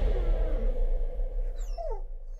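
A dog whining, one short call near the end that falls in pitch, over a low rumbling drone that slowly fades.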